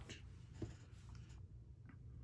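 Faint soft scratching of a fingertip picking up pressed eyeshadow from a small palette pan and rubbing it onto skin to swatch, with a couple of light ticks, over a low room hum.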